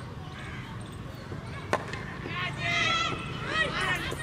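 A single sharp crack of a cricket bat striking the ball, about two seconds in. Shouting voices follow as the batsmen set off for a run.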